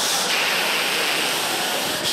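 Theatre audience laughing and applauding, loud and steady, with a brief dip near the end.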